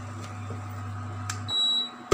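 Induction cooktop humming steadily, then switched off about one and a half seconds in: the hum stops and a single high beep sounds.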